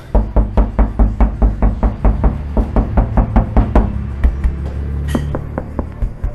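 Knuckles rapping quickly on the steel body panels of a 2008 Audi A5, about five knocks a second, then more sparsely after about four seconds. This is a knock test of panels just lined with sound-deadening mat, played over music with a steady bass line.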